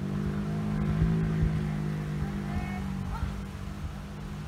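A steady motor-engine hum, strongest in the first half and fading toward the end, with a few short high chirps over it.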